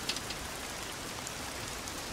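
Steady rain falling, an even hiss with faint drop ticks, in a film soundtrack.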